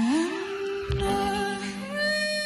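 A woman singing a wordless note live into a handheld microphone: her voice slides up and holds one long note over a steady low drone from the band. There is a low thump about a second in.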